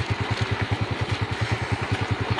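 Small van engine idling: a steady, rapid, even low pulsing.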